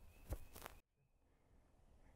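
Near silence, with two faint short sounds in the first second and an abrupt drop to dead quiet just before the one-second mark.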